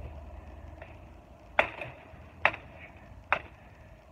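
Gerber Gator kukri machete chopping through shrub branches: three sharp chops, a little under a second apart.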